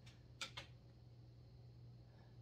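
Near silence: room tone with a steady low hum and two faint light clicks about half a second in.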